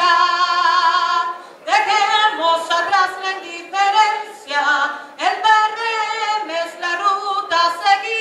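A woman singing solo and unaccompanied into a microphone: long held notes with vibrato, with short breaths between phrases.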